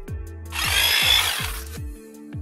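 Background music with a steady beat of deep kick drums. About half a second in, a loud, noisy, drill-like transition sound effect runs for about a second, then stops.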